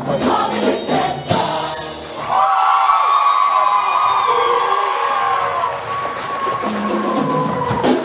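Show choir singing with band accompaniment: percussive hits under the voices at first, then the choir holds one long high chord for about five seconds, which cuts off near the end.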